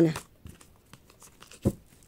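Tarot cards handled between the hands: faint rustling and light clicks of card stock sliding against card stock, with one short tap near the end.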